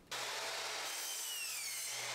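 Porter-Cable miter saw trimming a sliver off the end of a cellular shade. It starts suddenly and runs steadily as a high hissing cut, with a faint whine that slides slowly downward in pitch.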